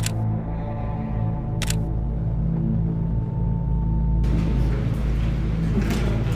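Background music with a steady low tone, cut by two camera shutter clicks, one at the start and one about a second and a half later. A hiss of noise joins for the last two seconds.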